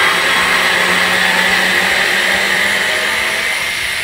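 Parkside PSF 4.6 A1 cordless screwdriver running steadily as it drives a wood screw into a wooden block, with motor and gearbox whine, easing off at the very end. The tool is running on a charge of about a minute.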